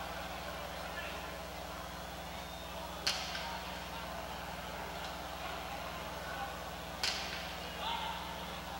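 Jai-alai pelota cracking off the fronton wall twice, about four seconds apart, each a sharp crack with a short ringing echo, over a steady low hum.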